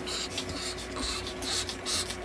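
A Chihuahua panting quickly in short breathy puffs, about three a second, over a steady low machine hum.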